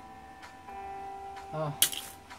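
Small plastic Lego pieces being handled, with a faint click about half a second in and a sharp, louder click near the end as pieces knock or snap together.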